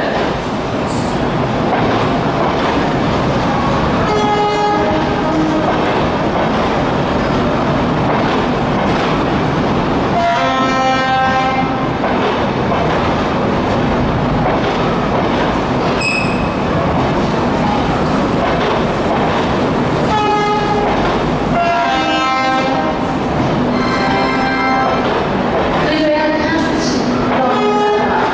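Alstom LHB passenger coaches rolling past on the rails, a loud, steady rumble of wheels and running gear. A train horn sounds in several blasts of a second or two: one about four seconds in, one near the middle, and a cluster near the end.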